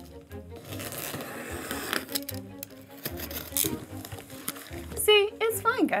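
A box cutter slicing through packing tape on a cardboard box, with scraping and short sharp cuts, over background music. A woman's voice comes in briefly near the end.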